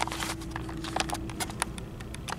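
Handling noise as the camera and gear are moved: a run of irregular light clicks and knocks over a faint steady hum.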